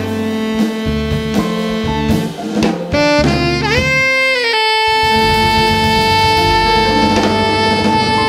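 Live jazz quartet: tenor saxophone over piano, double bass and drum kit. About three seconds in, the saxophone bends its pitch and then settles into one long held high note.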